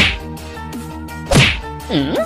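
Two sharp whack-like hits, one at the start and one about a second and a half later, each sweeping down from high to low pitch, over steady background music.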